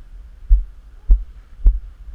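Three dull low thuds about half a second apart, in walking rhythm: footsteps on concrete carried through a body-worn camera. The quadcopter's motors are not running.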